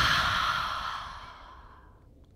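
A woman's long exhale through an open mouth, a final releasing breath that starts strong and fades away over nearly two seconds.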